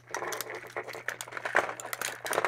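Thin plastic crinkling and crackling with a run of small clicks as a piece is worked off a plastic toy train by hand.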